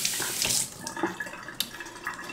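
Kitchen tap running into a sink, the stream loud at first and dropping off under a second in, followed by a few light clicks and knocks.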